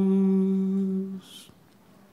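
A voice holding the last note of a sung chant as a long, steady hum, stopping abruptly about a second in, followed by a brief hiss and then quiet room tone.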